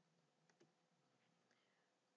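Near silence, with one very faint click about half a second in.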